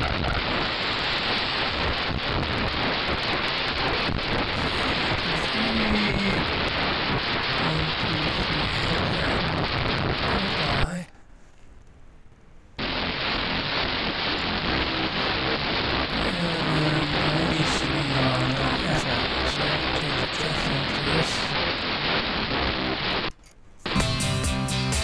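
FM broadcast audio at 101.5 MHz demodulated by a software-defined radio receiver: mostly hiss-like static with a faint station underneath. It cuts out for about two seconds near the middle while the receiver restarts at a new sample rate, and cuts out again briefly just before the end.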